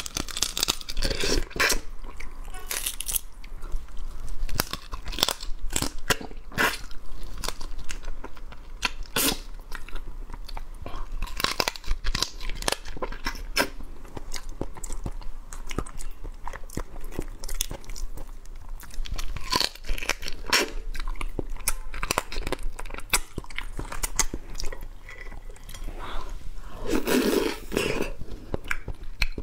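A whole crab being eaten by hand: the shell of the body and legs crunching and cracking between the teeth, with chewing, in irregular sharp crackles throughout.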